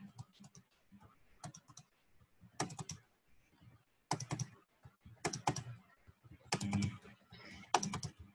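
Computer keyboard typing in about seven short bursts of rapid keystrokes, with brief pauses between them, as code text is edited.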